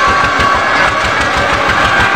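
Loud, steady throb of an engine running among a dense fair crowd, with several sustained high tones held over it.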